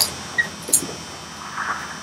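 Low background noise with two faint clicks and a brief soft rustle near the end.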